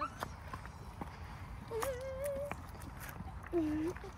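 Faint wordless vocal sounds: a wavering hum held for under a second around the middle and a shorter, lower 'mm' near the end, with a few small knocks in the first second and a low outdoor background.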